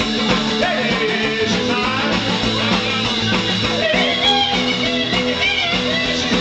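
Rock-and-roll band playing live, led by an amplified archtop electric guitar strummed in a driving rhythm with the rest of the combo behind it.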